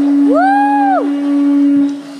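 A conch shell horn blown as one long, steady low note. A second, higher call rises, holds and falls away over it during the first second.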